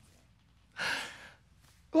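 A man's single audible breath, a breathy gasp or sigh lasting about half a second, about a second in.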